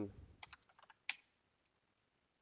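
Computer keyboard typing: a quick run of short keystrokes, then one sharper click about a second in.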